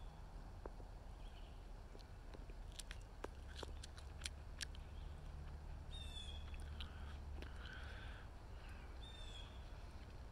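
Woodland birds calling: a short, high whistled note about six seconds in and again near the end, with a few other faint chirps, over a steady low rumble. A cluster of soft clicks in the middle comes from chewing a young eastern redbud leaf close to the microphone.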